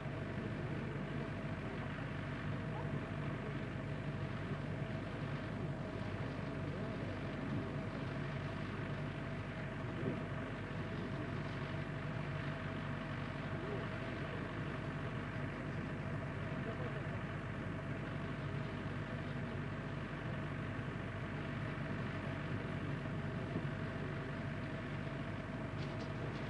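Steady background hum and hiss of a live launch-broadcast audio feed, unchanging throughout.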